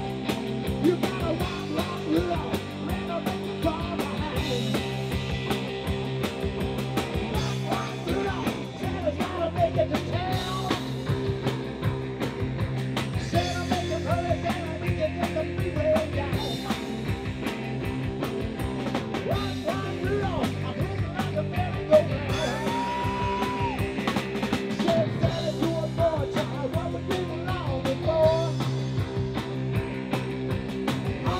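Live rock-and-roll band playing, with drum kit, electric bass and guitar, and a man singing lead through a microphone.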